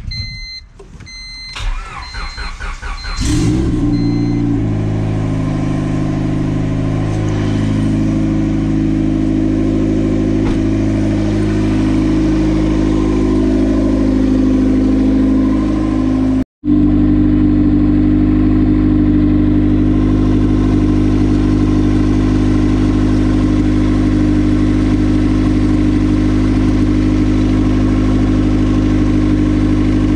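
A car's warning chime beeps a few times, then the turbocharged Honda D16 four-cylinder is cranked and starts about three seconds in. It settles into a steady idle, with a brief dropout about halfway. The engine is being run with the heater on to burp air from the freshly refilled cooling system.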